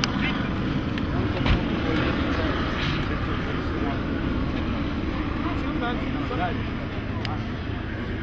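Steady low rumble of a vehicle engine running close by on the street, with indistinct voices and a single knock about a second and a half in.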